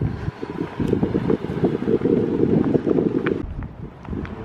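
Wind buffeting the camera microphone: a rough, fluttering low rumble that drops away near the end.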